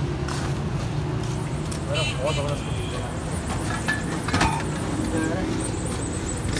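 Crushed ice being scooped with a metal scoop from a steel ice chest into clay pots, with scattered clinks and knocks, the sharpest about four and a half seconds in. A steady low hum runs underneath.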